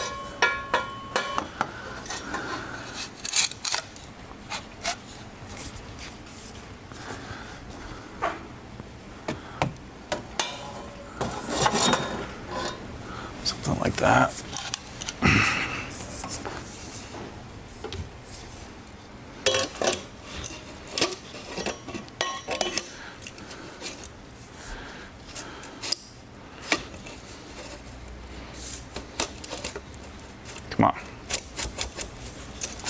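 Metal exhaust pipe sections and hardware clinking and clanking as they are handled and fitted together by hand. The knocks and clinks are scattered, some ringing briefly, with a longer run of clattering and scraping about midway.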